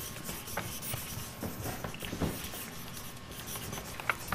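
Pens scratching on paper as several people write at once, with scattered faint taps of pens on the desk.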